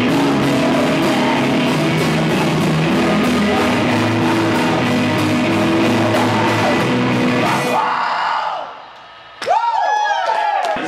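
Rock band playing live: a man singing over electric guitar, bass and drums, with steady cymbal strokes. The music drops away about eight seconds in, and a sudden loud sound with swooping pitches breaks in just before the end.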